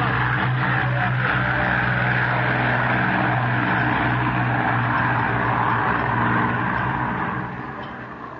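Aircraft engine noise of planes taking off low overhead, a loud steady drone with a deep hum, fading away near the end. It is a terrible noise.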